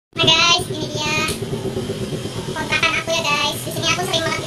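A high-pitched, child-like voice singing short phrases over background music.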